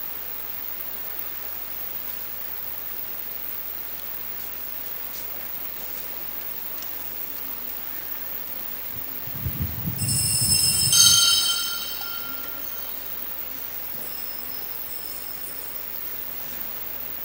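Steady background hiss. About ten seconds in come a low rumble and a brief, high metallic ringing, consistent with the chalice being handled close to the altar microphone.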